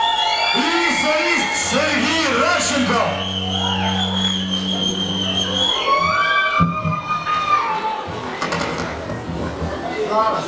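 A hall audience cheering and shouting while a rock band on stage plays a short opening on electric guitar and bass, with a long held chord in the middle.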